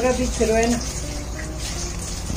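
A voice speaking briefly at the start, then a faint word later. A steady low hum and hiss run underneath.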